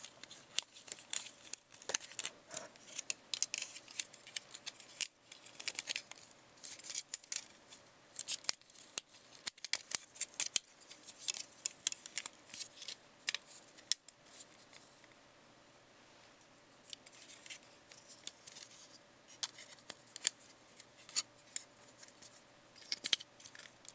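Plastic clicks and snaps from a Transformers Generations Megatron action figure as its joints and panels are moved and folded by hand during transformation, in quick irregular runs with a quieter pause about two-thirds of the way through.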